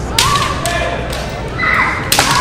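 Kendo bout: a sharp knock of shinai or stamping feet about a fifth of a second in, followed by the fencers' kiai shouts and a few lighter knocks, with a high, drawn-out shout near the end.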